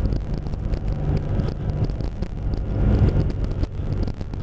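A car's engine and road noise heard from inside the cabin while driving, a steady low rumble.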